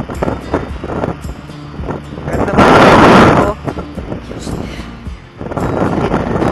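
Wind buffeting the microphone of a scooter on the move, in irregular gusts. A loud rush of wind about two and a half seconds in lasts roughly a second, and the buffeting picks up again near the end.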